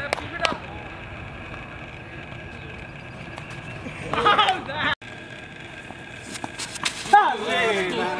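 Open-air ambience at an amateur cricket game, with players shouting twice, briefly and unintelligibly, a few sharp clicks, and a short drop-out about five seconds in.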